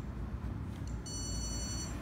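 A single electronic beep, one steady high tone lasting just under a second, starting about a second in. A few faint clicks come before it.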